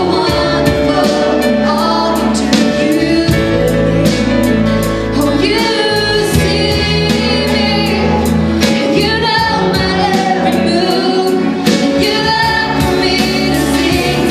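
Live worship song: a woman sings lead over a full band, with drums keeping a steady beat under guitars and keys.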